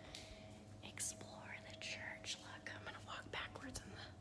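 A woman whispering quietly, over a faint steady low hum.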